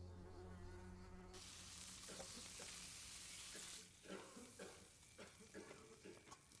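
A low steady hum for the first second or so gives way to a high, steady hiss lasting about two and a half seconds. After that come soft, scattered crackles of a small fire.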